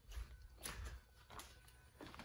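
Very quiet handling noise: a faint low rumble with a few soft knocks, from a phone camera being carried while its holder moves.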